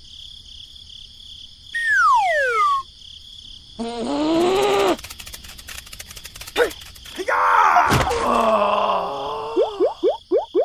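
Cartoon sound effects and squeaky character vocalizing for toy figures: a falling whistle about two seconds in, a groaning voice, a run of fast clicks, then a thud about eight seconds in followed by more groaning and short rising chirps near the end.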